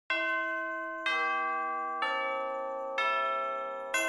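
Music played on bell-like chimes: four notes struck about once a second, each ringing out and fading before the next.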